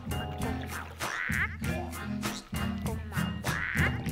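Cartoon frogs singing a song with a steady beat, their voices set in character as frog calls, with two louder, higher cries, one about a second in and one near the end.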